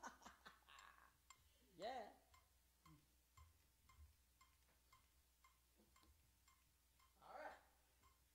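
Faint metronome click from a looper, ticking evenly about twice a second. A woman's short sung or hummed sound comes in about two seconds in and again near the end.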